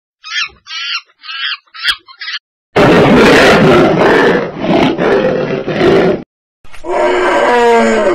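Monkey chattering in five quick repeated calls, then a loud roar lasting about three and a half seconds, then a shorter pitched animal call with falling tones near the end.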